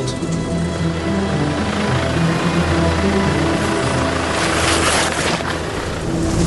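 Background music over the low, steady rumble of a Land Rover Defender's four-cylinder diesel crawling down a steep rocky slope. A rush of noise swells between about four and five seconds in.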